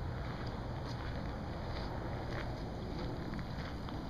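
Steady outdoor background noise, low and even, with wind on the microphone.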